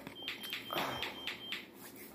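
Soft rustling of a noodle cup's paper lid being handled and set down, in quick short strokes, with a faint thin high tone coming and going during the first second and a half.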